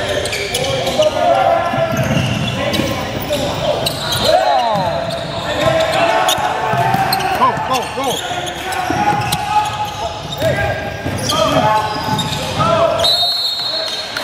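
A basketball bouncing on a hardwood gym floor during play, as repeated short knocks, with players' and spectators' voices ringing in a large, echoing gym.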